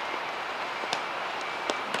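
Ambient sound of an outdoor futsal game: a steady background hiss with a few sharp knocks, one about a second in and two near the end, from play on the pitch.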